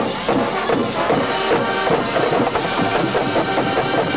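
High school marching band playing: flutes and horns over drums keeping a steady beat.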